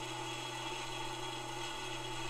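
Steady low electrical hum, with fainter higher steady tones above it, from the bench-wired start-sequence equipment of an AI-9 auxiliary power unit partway through its automatic start cycle, with its relays, solenoids and spark ignition unit energised.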